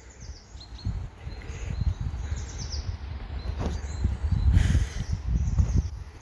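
Small birds chirping, a scattering of short high chirps, over a low, uneven rumble, with a brief hiss a little past the middle.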